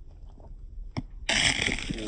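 A football shot hitting the goal net right beside the microphone: a sharp knock about a second in, then a loud rustling swish of the net being driven in, starting suddenly and lasting most of a second.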